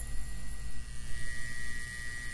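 Electrical hum sound effect: a steady low hum with a thin high tone that swells toward the end.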